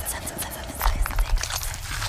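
Small crackling, sticky clicks of skin being peeled away from a palm, bunched about a second in, over a low rumbling drone.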